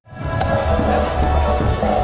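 Live band music played loud through stage PA speakers, with a heavy, pulsing bass beat and a keyboard; it cuts in abruptly.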